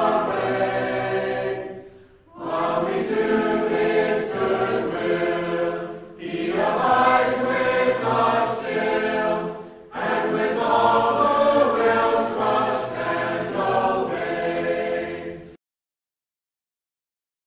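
A choir singing in sustained phrases, with brief pauses between them, stopping abruptly near the end.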